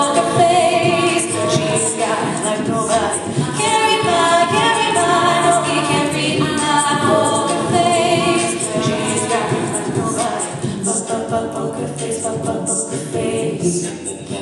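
An a cappella vocal group singing: a woman's lead voice carries the melody over sustained backing harmonies from the rest of the group, with no instruments.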